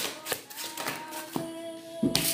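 Soft background music with long held notes, a higher tone giving way to two lower ones about two-thirds of the way in. Over it come a few light taps and flicks of a tarot deck being shuffled in the hands.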